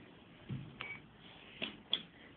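A front-loading washing machine's door being pulled open: a dull knock about half a second in, then a few sharp clicks of the door and latch, the loudest near the end.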